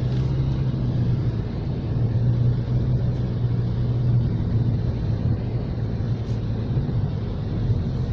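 Cabin noise of a car driving at road speed: a steady low drone of engine and tyres.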